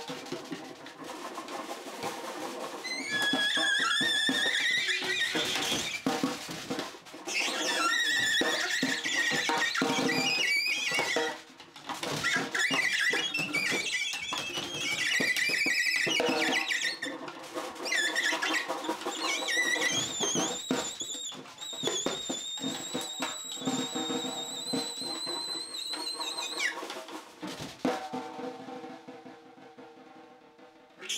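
Free-improvised duo of alto saxophone and snare drum: the saxophone plays very high, wavering squealing notes, including one long held high note after about twenty seconds, while the snare is struck with sticks in fast runs of hits. Both fall away and the sound thins out near the end.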